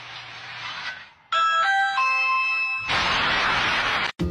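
Steady hiss with a low hum for about a second, then a short electronic chime of several sustained notes in turn, then a loud rush of noise for the last second.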